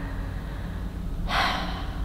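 A woman's audible in-breath between sentences, starting a little over a second in and lasting about half a second, over a steady low hum.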